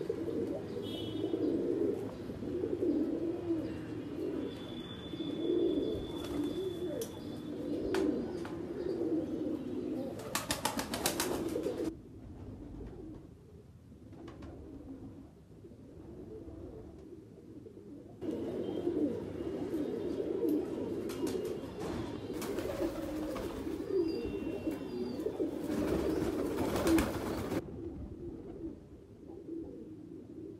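Many pigeons cooing at once, a dense low murmur of overlapping coos. It drops away for several seconds in the middle. Near the end there is a brief burst of wing flapping.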